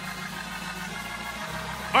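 Church background music under a sermon: a low sustained chord held by the band, shifting to another chord near the end, with faint voices.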